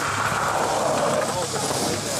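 Crowd of spectators talking over one another, with a steady low hum underneath.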